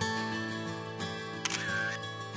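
Background music on acoustic guitar, with a single camera-shutter click about one and a half seconds in as the slide changes.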